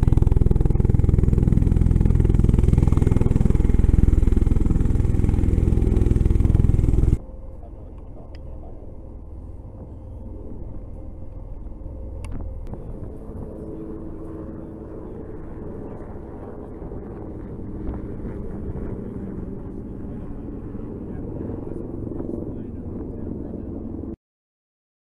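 A loud low rumble for about seven seconds, then a sudden cut to a much quieter, steady low hum with a faint tone running through it: outdoor ambient noise picked up by a phone microphone.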